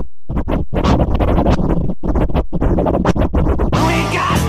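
Electronic music break with DJ scratching. It opens with a brief drop-out, then runs as a string of quick chopped stutters, and the full track comes back near the end.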